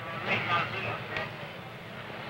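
Indistinct voices of people in a crowd, loudest near the start, with a short click about a second in.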